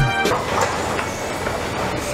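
Music cuts off about a third of a second in, giving way to the steady rumbling clatter of a train.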